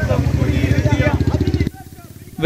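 Outdoor street rally sound: men's voices shouting slogans over a motor vehicle engine running close by with a steady low rumble. The sound cuts off abruptly near the end.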